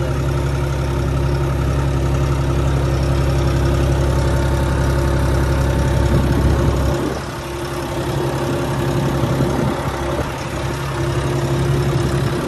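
John Deere 5310 tractor's three-cylinder diesel engine running steadily, heard from the driver's seat while the tractor pulls a laser land leveller across a field. The deep low rumble drops away about seven seconds in, leaving a lighter, steady engine note.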